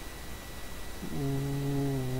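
A man's voice humming a steady, level-pitched "mmm" for just over a second, starting about a second in: a thinking pause before he goes on talking.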